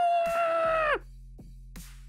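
A man's long wordless cry of disbelief, rising in pitch, held for about a second and then falling away, muffled by the hands over his mouth. A faint low steady background tone continues underneath after it stops.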